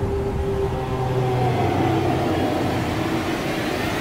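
Film-trailer sound effects: a steady deep rumble and rush of water as a huge ship's hull rises out of the sea, with a few long held tones over it.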